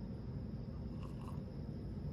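Quiet room tone: a steady low hum, with a couple of faint soft sounds about a second in as a man drinks from a glass of beer.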